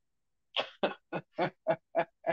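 A person laughing: a run of short breathy laughs, about three to four a second, starting about half a second in.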